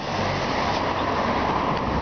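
Steady wind rushing over the camera microphone on a moving bicycle, mixed with the rumble of road traffic, a truck and cars, on the highway.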